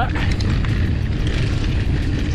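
Wind buffeting a bike-mounted camera's microphone over tyre rumble as an electric mountain bike rolls along a dirt singletrack trail.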